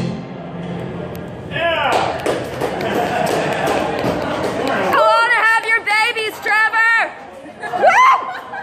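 Wordless voices whooping and yelling as the song ends. A long falling yell comes early, a run of short rising-and-falling whoops follows about halfway through, and a sharp rising whoop comes near the end.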